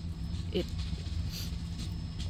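A steady low hum, with no clear start or stop, under a single short spoken word about half a second in.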